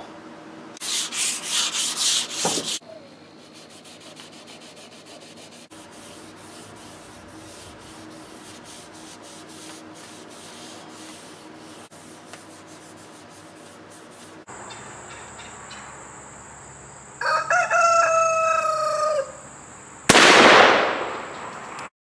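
A hand rubs the wooden stock of a muzzleloading long rifle in quick strokes for about two seconds. Later comes a drawn-out pitched call lasting about two seconds, and near the end a loud whoosh that falls and fades.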